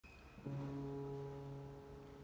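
Tenor saxophone playing one long, low held note, starting about half a second in.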